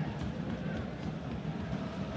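Steady ambient noise from the pitch microphones of a football match in play, with faint distant player shouts.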